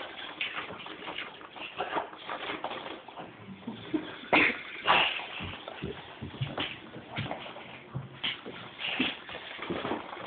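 Irregular scuffling and light knocks of movement on a floor, from the dog and the squirrel toy, with a couple of louder knocks about halfway through.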